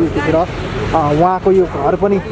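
Several people talking, voices overlapping, over a low steady background of street noise.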